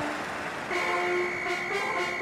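A held horn-like tone starting about a third of the way in, sounding together with several lower steady notes, over a faint regular beat.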